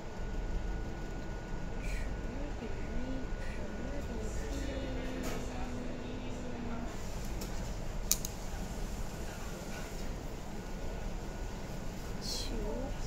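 Steady room noise with a low hum and faint, indistinct voices in the background, with one sharp click about eight seconds in.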